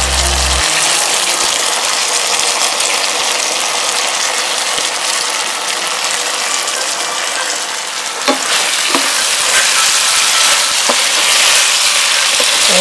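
Chicken thigh bites sizzling steadily as they simmer in a honey garlic sauce in the pan, with a few light clicks about eight to nine seconds in and again near the end.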